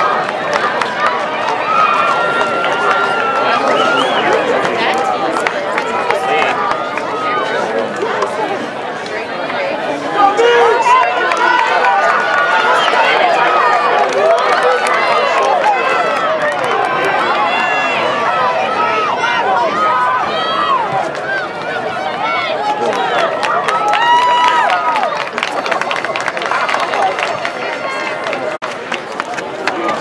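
Grandstand crowd cheering and shouting runners on during a sprint relay race, many voices yelling at once. It dips briefly about ten seconds in and then rises again.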